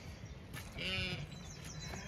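A Zwartbles sheep bleats once about a second in, a single quavering bleat lasting about half a second, with faint birdsong behind it.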